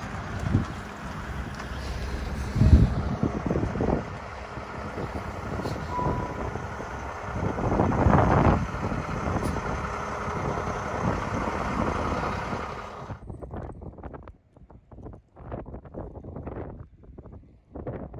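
Wind buffeting the microphone in gusts, with louder swells about three and eight seconds in. After about thirteen seconds the sound drops to quieter, patchy rumbles.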